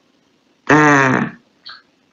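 A single drawn-out voiced syllable from a person's voice, lasting well under a second, followed by a short hiss.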